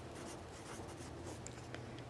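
Faint pen scratching on paper, writing out words in a ledger journal.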